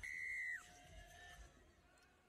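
Referee's whistle: one steady, high blast of about half a second, its pitch dropping slightly as it ends, signalling the kickoff that restarts the rugby sevens match for the second half.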